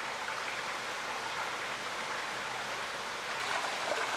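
Water pouring into a koi pond from an inlet pipe, a steady splashing rush.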